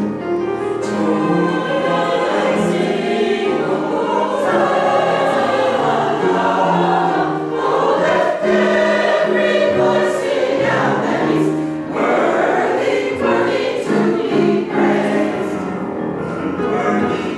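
A mixed choir of men's and women's voices singing a gospel-style anthem in harmony, with sustained, shifting chords throughout.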